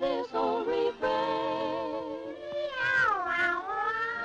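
A cartoon tomcat's courting serenade sung as a meow, over music. It is a long wavering note that swoops down and back up about three seconds in.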